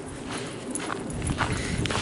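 Footsteps of a person walking, faint irregular steps over outdoor background noise.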